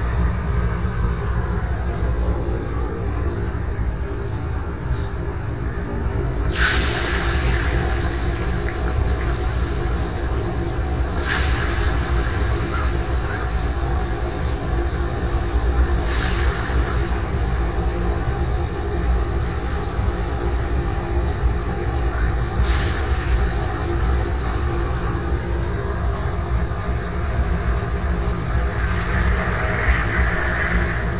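Steady low rumble and sizzle from a big wood-fired frying stove with a large wok of hot oil. Four sharp metal clacks come several seconds apart, as a long-handled wire skimmer strikes the wok.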